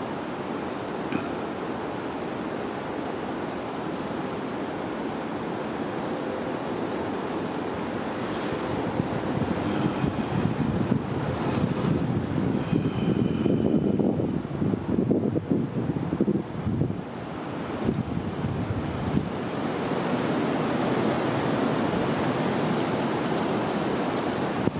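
Wind rushing over the microphone, a steady rumbling noise that turns gusty and uneven in the middle and settles again near the end.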